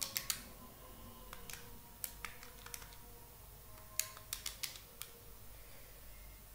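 Pen stylus tapping and scratching on a writing tablet while handwriting equations: about ten sharp, irregular clicks, some in quick pairs, with faint scratching between them.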